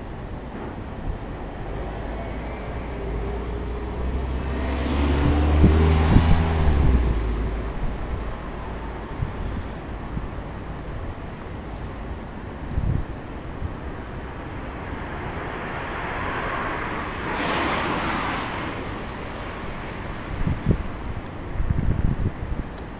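Two vehicles passing one after the other: the first, about five seconds in, with a low engine hum under a rising and falling swell of road noise, the second, around seventeen seconds, mostly a softer swell of tyre noise. A steady low rumble and wind on the microphone lie underneath, with a few sharp knocks near the end.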